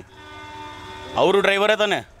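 A vehicle horn sounding one steady held note for about a second, then a man speaking.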